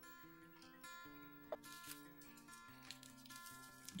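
Faint acoustic guitar background music, notes plucked in a gentle melody.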